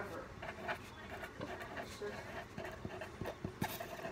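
Black marker drawing on a sheet of paper on a table close to the microphone, with a few soft taps, under faint voices.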